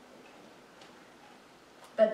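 Quiet room tone with two faint ticks about a second apart.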